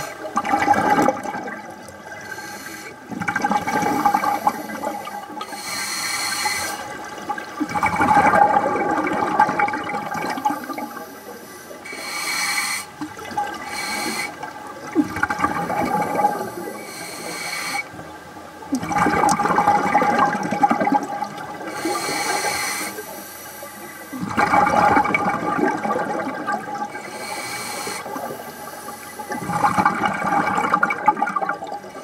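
Scuba diver's regulator breathing underwater: loud bubbling exhalations about every four seconds, with shorter high hissing inhalations between them.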